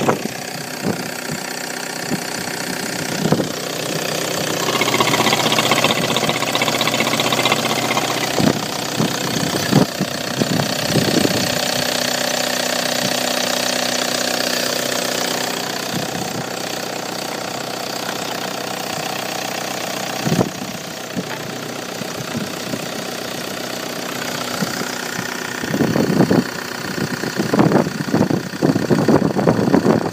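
Opel Y20DTH 2.0-litre four-cylinder turbodiesel running steadily at idle, with a few short knocks and bumps, bunched near the end.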